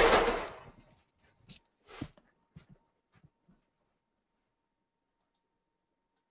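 A short hissing burst that fades away over about a second, followed by a few faint knocks and clicks, then near quiet.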